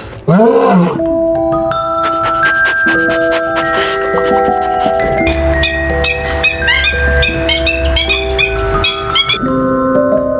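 Background music of held, mallet-like notes with clicking percussion. It opens with a short animal-like cry that rises and falls in pitch.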